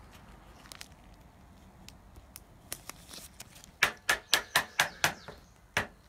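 Handling of a hard plastic trading-card case: faint scattered clicks, then a quick run of about seven sharp clicks and taps about two thirds of the way in, and one more near the end.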